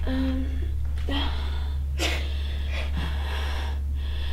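A person's short, breathy exhalations and inhalations, a few of them about once a second, the sharpest about halfway through, over a steady low electrical hum.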